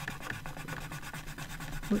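Metallic watercolour pencil scribbling on black paper in rapid back-and-forth strokes, laying down a swatch: a dry, scratchy rubbing.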